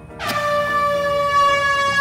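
A paper party blower being blown: one long, steady, reedy note that starts a moment in and is held at the same pitch.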